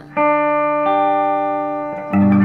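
Electric guitar picking the notes of an open G major chord one at a time, each note left ringing: one note, then a second added just under a second in.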